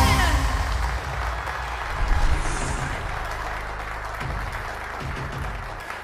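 The band's final held chord falls away with a short downward slide in the first half-second, giving way to audience applause that slowly fades.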